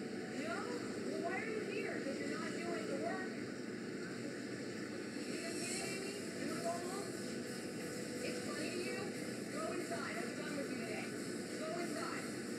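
Indistinct voices talking in the background over a steady noise floor; no words are clear enough to make out.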